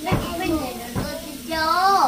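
A young girl singing a short sung phrase, with two low thumps about a second apart.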